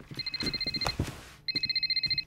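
Mobile phone ringing with a fast electronic trill, two rings.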